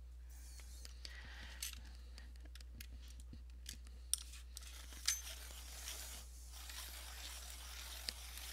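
Quiet, scattered small clicks and light rustling of coloured pencils and art supplies being handled while someone rummages for a pencil sharpener.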